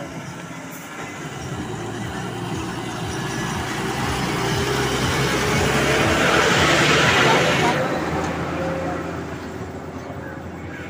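A heavy, loaded goods truck driving past close by on the road. Its engine and tyre noise build up gradually, are loudest about seven seconds in, then fade away.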